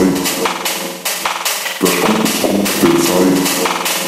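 Techno DJ mix in a breakdown: the kick drum and bass are out, leaving percussion hits and pulsing chord stabs.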